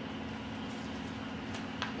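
A steady low hum, with two light clicks about one and a half seconds in from small toys being handled on the play mat.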